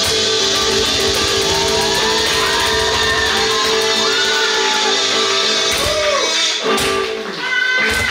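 Live acoustic band playing an instrumental passage: strummed acoustic guitar with harmonica lines that slide in pitch, over a cajon beat.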